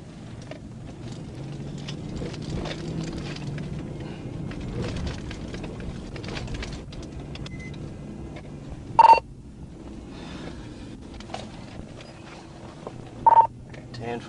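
Steady engine and road noise inside a patrol car's cabin as it drives slowly, broken twice by a short, loud electronic beep, once about nine seconds in and again about four seconds later.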